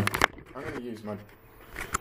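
A single hesitant spoken word, with a few sharp handling clicks at the start and one more just before the end; otherwise a quiet room.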